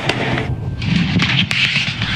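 Pyrotechnic decoy flare fired in a ground test, burning with a loud rushing hiss that dips briefly about half a second in, with a few sharp cracks.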